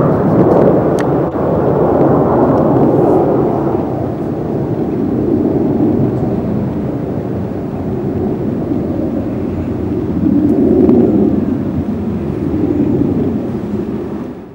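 Aerobatic aircraft flying overhead: a steady, low engine roar that swells in the first few seconds and again about ten seconds in.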